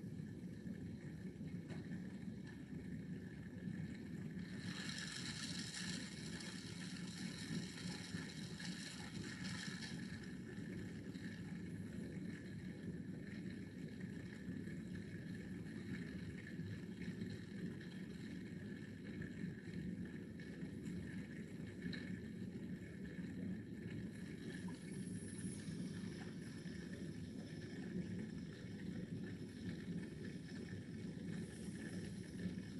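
Forklift engines running steadily, a low rumble, with a hiss that comes in about four seconds in and fades out around ten seconds.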